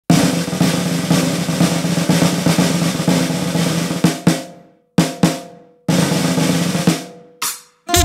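Snare drum playing a parade-style intro: a sustained roll for about four seconds, a few single accented strokes with gaps between them, a second, shorter roll, and one last stroke near the end. Each stroke leaves a brief ring.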